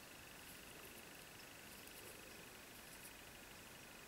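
Near silence: room tone, a faint steady hiss with a thin, steady high-pitched whine.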